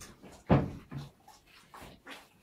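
Gloved hands kneading bread dough in a plastic bowl: a few uneven thuds and squelches, the loudest about half a second in.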